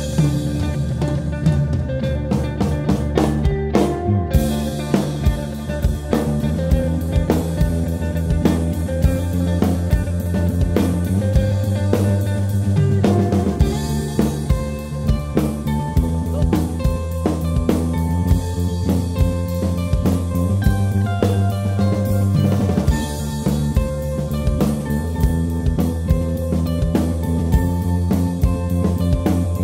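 A small rock band playing an instrumental passage live: electric bass guitar holding steady low notes under a drum kit played with sticks, with acoustic guitar. The drumming fills out about four seconds in.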